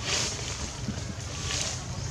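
Wind on the microphone: a steady low rumble with two brief hissy gusts, one just after the start and one past the middle.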